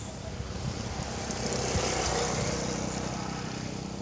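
A motor vehicle passing by, its noise swelling to a peak about halfway through and then fading.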